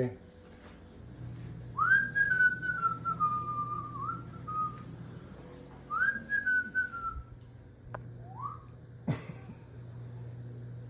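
A person whistling casually: two long phrases that slide downward in pitch, then a short rising note. A sharp knock sounds near the end.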